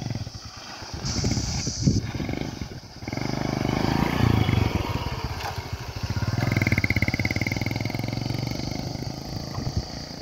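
Bajaj Kawasaki 4S Champion's single-cylinder four-stroke motorcycle engine running, then revving up about three seconds in as the bike pulls away from a standstill. It stays loud and rhythmic for several seconds, then fades near the end as the bike rides off.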